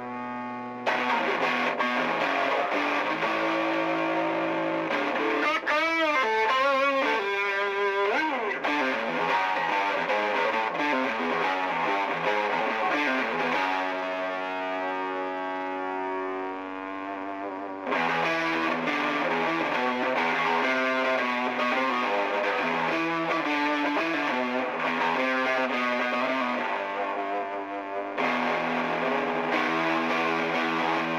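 Electric guitar played through a Skreddy fuzz pedal: distorted, sustaining notes and riffs, with wavering string bends about six seconds in. Near the middle a long held note is left to ring and fade before the playing comes back in louder.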